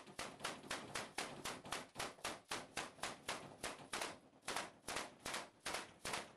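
Rapid gunfire: an even run of sharp shots, about four a second, fairly faint.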